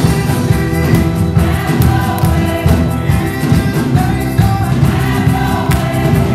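Gospel music with a choir singing, loud and continuous over a steady low accompaniment.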